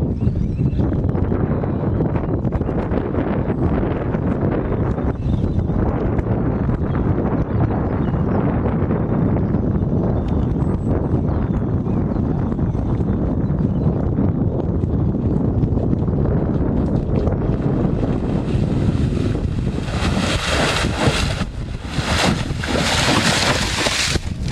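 Wind buffeting the camera microphone: a loud, steady low rumble that turns harsher and brighter over the last few seconds.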